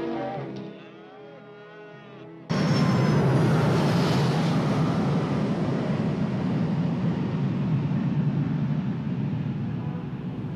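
A twin-engine jet airliner coming in low to land: a loud, steady engine roar that cuts in suddenly about two and a half seconds in. Before it there is quieter music.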